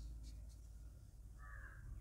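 A faint, low room hum with one short bird call about one and a half seconds in.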